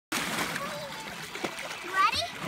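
Water splashing and sloshing, with faint voices behind it and one sharp knock about one and a half seconds in.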